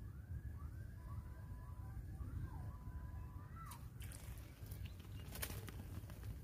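A bird calling a steady series of short rising-and-falling notes, about two a second, over a low rumble; the calling stops about four seconds in, and a few brief clicks follow.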